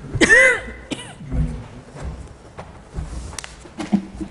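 A person coughing: one short, loud cough just after the start and a smaller one about a second in.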